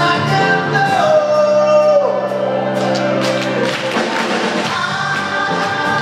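Male vocalist singing live with a symphonic orchestra: a long held note that slides down about two seconds in, over sustained orchestral chords, with percussion strikes joining from about three seconds in.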